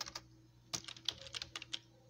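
Typing on a computer keyboard: a few key clicks, a short pause, then a quicker run of keystrokes as a word is typed.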